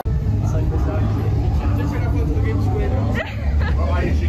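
Heavy low rumble under indistinct background chatter. The sound changes abruptly at the start and again about three seconds in.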